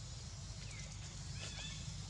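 A few short, high-pitched squeaks from a young long-tailed macaque: one falling squeak, then a quick cluster of three or so about a second and a half in, over a steady low rumble.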